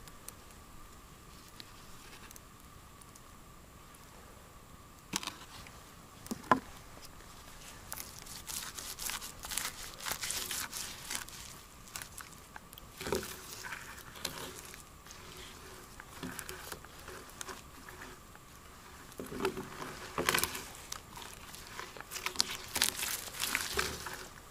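Small paint roller being rolled back and forth over a rough oak post, spreading used motor oil, in uneven crackly strokes that start about eight seconds in. A couple of sharp knocks come about five and six seconds in.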